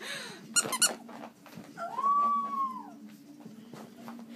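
French bulldog puppy giving one long high-pitched whine of about a second, level and then falling away at the end, preceded by a few sharp short sounds near the start.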